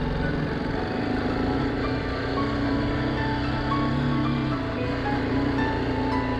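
BMW G310GS single-cylinder motorcycle engine running at a steady pace on a dirt trail, heard through an onboard camera, with background music under it.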